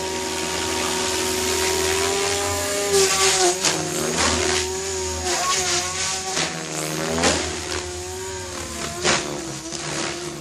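Goblin 500 electric RC helicopter in hard 3D flight: the high rotor and motor whine holds steady, then dips and bends in pitch again and again as the blades are loaded, with several sharp blade whooshes during the manoeuvres.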